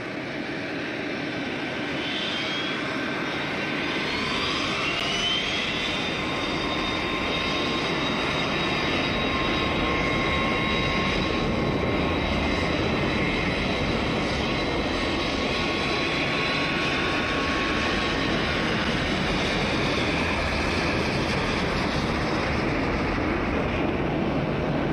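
Jet airliner engines running with a loud steady roar and a high whine over it. The roar builds over the first several seconds, then holds.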